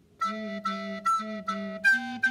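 Soprano recorder played with the player's voice humming along underneath, the mistake of saying "ooh" into the instrument: about five short tongued notes on E, then a step up to G near the end, each note doubled by the lower hum.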